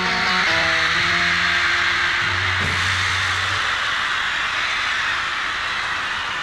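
A live rock band's last guitar and bass notes die away in the first few seconds. Steady, loud screaming from a concert crowd carries on over and after them.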